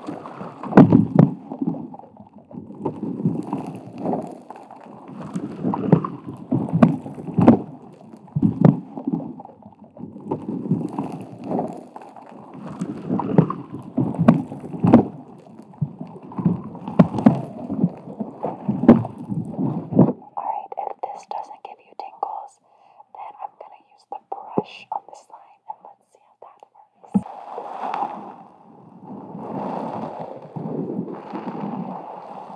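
Long acrylic nails scratching and tapping on a rubber microphone cover right at the mic, in close strokes about once a second with sharp clicks, under inaudible whispering. About two-thirds through the scratching stops, leaving softer, broken whisper and mouth sounds, and it resumes near the end.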